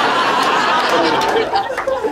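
Audience laughter filling the room after a joke, dying down near the end.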